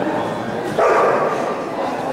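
A dog barks once, loudly and sharply, about a second in, over background chatter in the hall.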